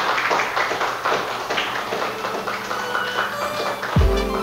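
An audience applauding, the clapping thinning out toward the end, with faint music coming in under it in the last second.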